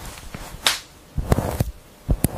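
Sharp swishing and clicking as hair strands are pulled through lace with a ventilating hook. The loudest is a whip-like swish about two-thirds of a second in, followed by a cluster of quick clicks.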